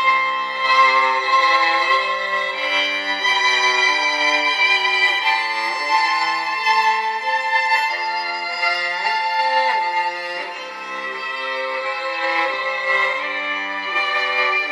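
Violin music played through the Moto X Play smartphone's single mono loudspeaker, a steady flowing melody with no deep bass.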